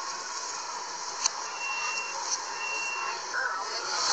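Metro train door-closing warning beeps: two high beeps of about half a second each, a little apart, over the steady noise of the train and platform. A sharp click comes just before them. The audio is played in reverse.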